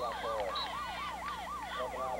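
A siren in a fast yelp, its pitch rising and falling about four to five times a second, with voices faintly underneath.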